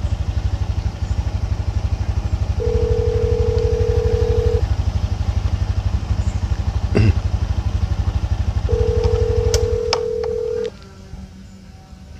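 Ringback tone of an outgoing phone call: two steady beeps of about two seconds each, some four seconds apart, heard over the low steady rumble of an idling motorcycle engine. The rumble stops near the end, just as the second beep ends.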